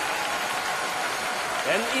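Large audience applauding, a steady even clatter of many hands. A man's voice begins over it near the end.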